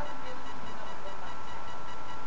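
Steady hiss with a faint, thin, high steady tone: the microphone's background noise during a pause in speech, with no distinct sound event.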